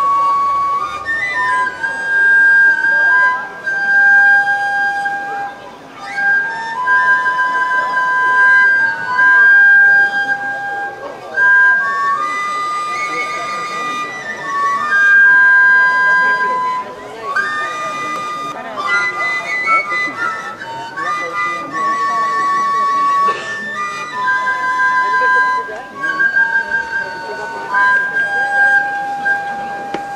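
Several wooden folk flutes played together, a slow melody of held notes that step from pitch to pitch, two or three parts moving in parallel harmony.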